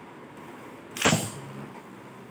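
A Beyblade Burst top launched into a clear plastic stadium: a short, loud rip of the launcher about a second in as the top is released onto the stadium floor, followed by the faint whirr of the top spinning.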